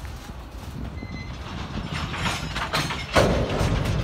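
Open-top freight cars rolling past on the track: a steady low rumble of steel wheels on rail with a run of clicks and knocks, the loudest a sharp clank a little after three seconds in.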